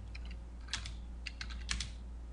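Computer keyboard being typed on: a few irregular keystrokes with short pauses between them.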